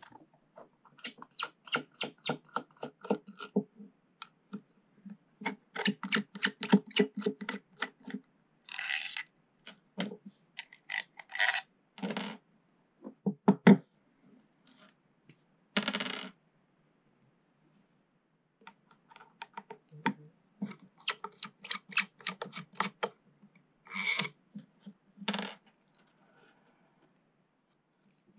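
Runs of rapid, evenly spaced clicks from a hand screwdriver turning small screws out of a pump housing. Between the runs, small metal screws and parts clink and rattle as they are handled and set down on the table.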